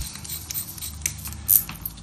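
An LED bulb being screwed by gloved hands into a plastic lampholder: light scraping and small clicks of the base threads, with one sharper click about one and a half seconds in.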